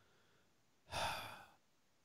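A single audible breath from a person, about half a second long, a second in, fading out; the rest is near silence.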